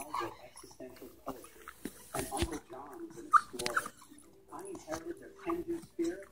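A small dog chewing a chewy dried sweet potato treat: a run of wet mouth clicks and smacks, the sharpest a little past the middle, with short whimpering sounds in the second half.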